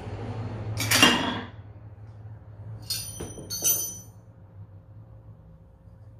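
A loud, short crash about a second in, then two sharp, ringing metallic clinks about two seconds later, from an aluminum loading pin that has given way under a 97 lb Finnish ball.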